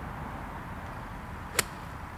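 Golf iron striking the turf once and taking a divot, a single sharp impact about a second and a half in. The club misses the ball on the inside, so only the ground is struck.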